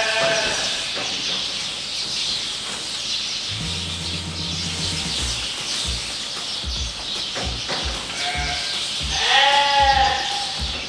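Sheep bleating a few times, loudest near the end, over the steady rustle of wood shavings being tossed across a livestock trailer floor as bedding.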